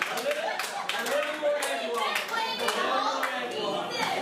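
Scattered hand claps, thickest in the first couple of seconds and sparser after, over voices and chatter.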